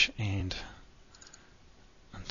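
Computer mouse clicking: a sharp click about half a second in, then a few faint ticks.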